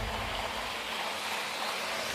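Steady, even hiss of background noise in a pause between speech, with no distinct event.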